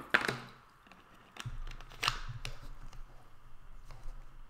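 A few short, sharp crackling and clicking handling noises close to the microphone, loudest at the very start and again about two seconds in, with a low steady hum coming in about a second and a half in.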